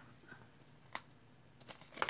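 Near silence with faint handling noise: one sharp click about a second in and a few small clicks near the end, as the foam board holding the metal earrings is picked up.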